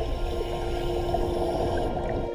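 Underwater rush of air bubbles from a scuba diver, stopping shortly after the end, over background music with long held tones.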